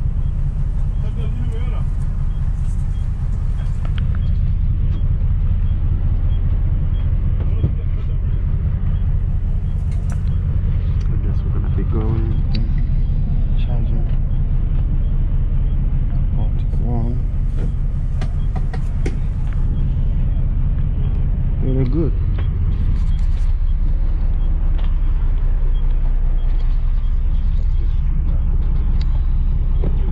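Steady low rumble of a coach bus engine heard from inside the passenger cabin, with faint passenger voices now and then.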